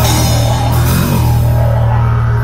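Live band music: a steady low didgeridoo drone over a pulsing electronic beat and drum kit with cymbals. The drums and cymbals drop away near the end, leaving the drone and beat.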